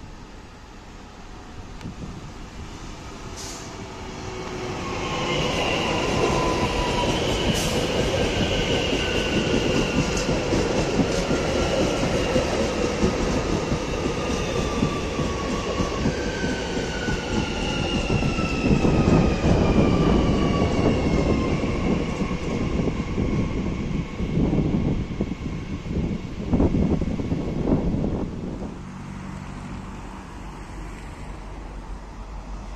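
Single-deck Transilien electric multiple unit running past along the platform, the wheels rumbling on the rails, growing louder from about four seconds in. Its motors give off a whine that glides slowly down in pitch several times over. Near the end come a few clattering knocks, then the sound drops away.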